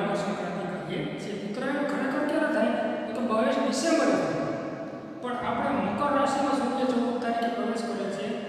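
Speech only: a man lecturing, talking continuously.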